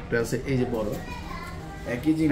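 Speech for about the first second, then fainter, higher-pitched voices in the background.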